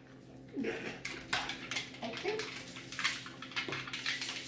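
Scattered clicks, taps and crinkles from hands working at a table with plastic bags, foil pans and a spoon in a plastic cup, beginning about a second in, with a couple of brief bits of voice and a faint steady hum underneath.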